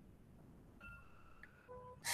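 Near silence: the quiet line of an online call, with two faint, brief steady tones in the second half.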